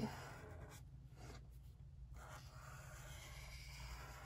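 Felt-tip marker drawing on sketchbook paper: faint, scratchy strokes that come in several stretches with short pauses between them.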